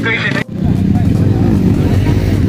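Dirt bike engines running close by: a loud, steady rumble that starts abruptly about half a second in, after a brief spoken phrase.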